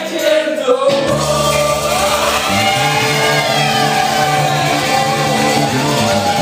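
Live gospel music: a male lead singer on a microphone with other voices joining, over electric keyboard accompaniment. The bass drops out at the start and comes back in about a second in.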